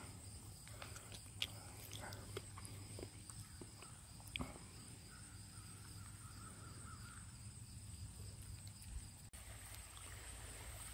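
Faint outdoor field ambience: a steady high insect trill, with scattered small clicks and rustles from footsteps and handling in long grass.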